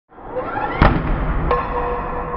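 Intro sound effect: a rising swell ends in a sharp hit just under a second in. A second hit about half a second later leaves a steady gong-like ringing tone.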